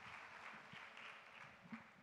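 Faint applause from a congregation, fading toward the end.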